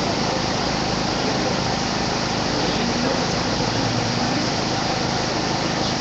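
Steady, loud hiss-like background noise in a mobile-phone recording, with no distinct events.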